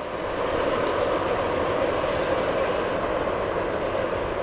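Freight train cars rolling away on the rails: a steady rumble of steel wheels on track.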